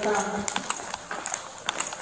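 Footsteps on a concrete garage floor: a string of sharp, irregular clicks as two people walk.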